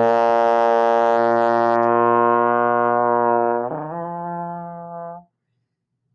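Trombone in first position holding a low B-flat for about three and a half seconds, then slurring up to F, the change between the notes slow and smeared. It is a deliberately poor lip slur: the inside of the mouth shifts too slowly between the two vowel shapes, and it sounds kind of gross.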